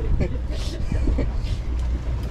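Low steady drone of a fishing boat's engine, with faint voices of people on deck over it.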